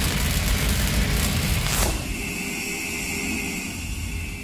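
Cinematic logo-sting sound effects: the rumbling, hissing tail of a deep boom, a falling whoosh about two seconds in, then a steady high hum that carries on.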